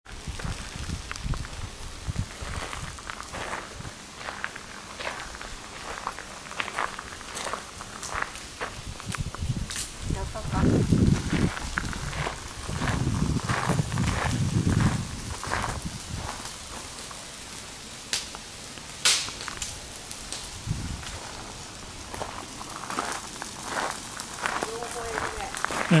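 Footsteps walking outdoors, a steady run of short crunching ticks, with faint voices in the background and a low rumble for a few seconds in the middle.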